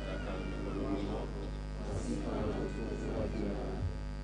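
Congregation singing a hymn in drawn-out, wavering notes, with a steady electrical mains hum underneath.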